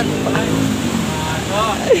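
An engine running steadily in the background with an even, low hum, under short bits of talk.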